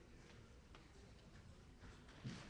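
Near silence: room tone with a couple of faint ticks.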